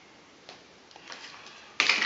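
Faint handling noises of paper and plastic parts, with a light click about half a second in and a few soft ticks and rustles.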